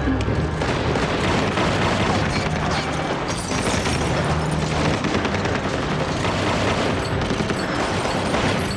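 Action-film soundtrack: dramatic score mixed with loud booms and repeated gunshots, running densely without a break.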